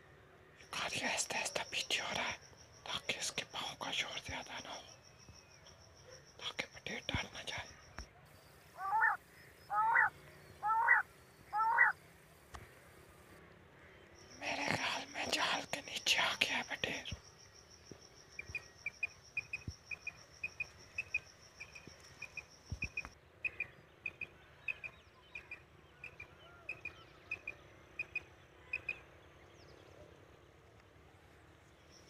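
Quail calls in a field: four loud rising chirps, one about every second, around nine to twelve seconds in, then a long run of short, soft pips, roughly two a second, through the second half. Whispered talk is heard in the opening seconds and again around fifteen seconds.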